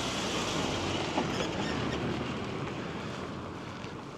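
Pickup truck passing close by on a narrow lane and driving away, its engine and tyre noise loudest in the first couple of seconds and fading toward the end.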